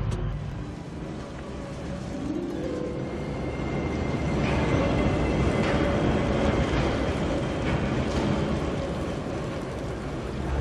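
Film soundtrack: a score of held tones over a steady rush of rain, which grows louder about four seconds in.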